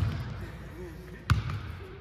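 A basketball bouncing twice on a hardwood gym floor: once at the start and again a little over a second later.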